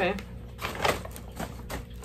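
Dog treats being broken into pieces by hand: a few short, dry cracks and snaps spread over two seconds.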